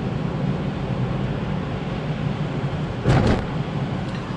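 Steady in-cabin engine and tyre noise of a Toyota RAV4 driving on a wet road, with a short, louder whoosh about three seconds in.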